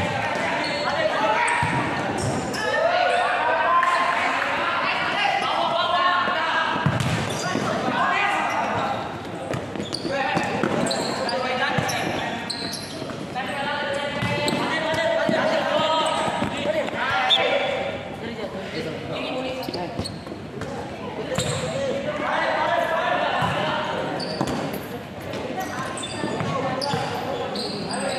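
Players and spectators calling and shouting in a large hall during a futsal match, with the knocks of the futsal ball being kicked and bouncing on the court.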